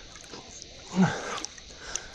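Lake water lapping at a camera held at the surface, with one short, low grunt or gasping breath from a swimmer about a second in.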